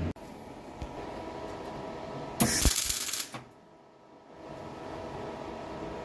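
Welding arc crackling in one short burst of about a second near the middle, over a faint steady workshop background.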